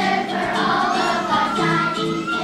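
A fourth-grade children's choir singing a song together, with continuous sung notes throughout.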